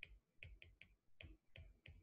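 Faint, irregular ticks of a stylus tip tapping on a tablet's glass screen while a word is handwritten, about four ticks a second.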